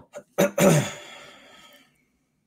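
A man clearing his throat: a short catch, then a louder rasp that fades away over about a second.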